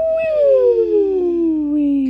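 Cartoon snoring: a long, pitched out-breath snore that slides steadily down in pitch for about two seconds, with two close tones gliding down together.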